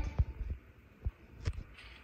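A few soft, low thumps and a brief paper rustle from handling a hardcover picture book as a page is about to be turned.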